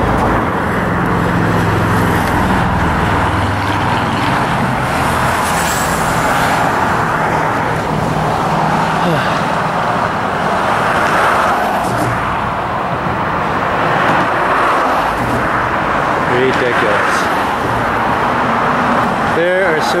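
Steady road traffic on a steel truss bridge: cars driving past on the roadway right beside the pedestrian walkway.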